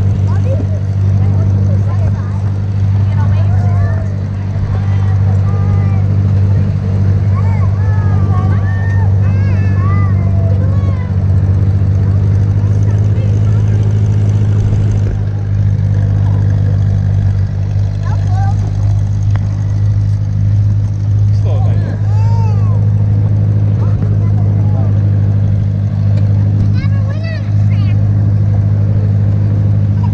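Vintage farm tractor engine running at a steady low drone while towing a loaded hay wagon, with children's voices faint behind it.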